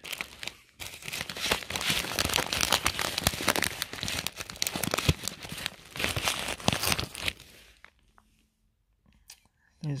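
Clear plastic pocket-letter sleeve crinkling and rustling as fingers work an item out of its pocket, with many small sharp crackles; the rustling fades out about three-quarters of the way through.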